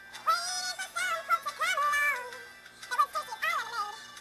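A high-pitched, synthetic-sounding sung vocal with music, in short phrases that glide up and down in pitch.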